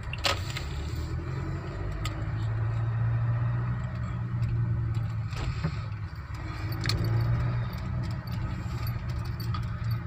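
Car engine and road noise heard from inside the cabin while driving slowly: a steady low hum, with a few light clicks and rattles.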